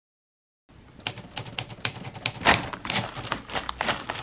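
Rapid, irregular clicks and light clinks of kitchenware as a breakfast bowl is handled, starting after a moment of silence.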